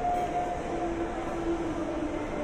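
Steady indoor background noise with a low rumble and faint held tones, with no clear single event.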